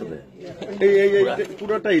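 Men talking over each other in a crowd, a male voice loud and close. About a second in, one voice holds a drawn-out syllable.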